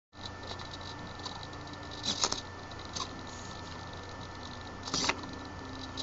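Handling noise on a workbench: a few short clatters and rustles, about two seconds in, at three seconds and again near five seconds, over a steady low electrical hum.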